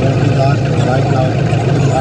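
A person's voice, its pitch bending up and down, over a steady low hum.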